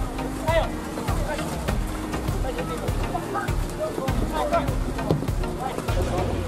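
Voices calling out across a football pitch, short scattered shouts, with music underneath.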